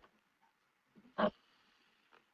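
One short voiced syllable, a brief "ok" or grunt, about a second in, heard over an online voice-chat line; otherwise the line is nearly silent.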